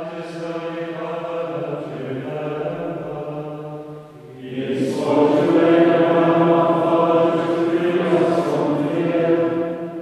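Dominican friars singing plainchant: one sung phrase, a short break about four seconds in, then a second, louder phrase.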